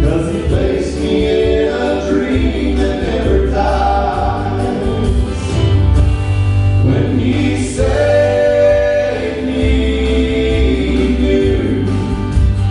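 Male gospel vocal trio singing a song in harmony over accompaniment with a steady bass line.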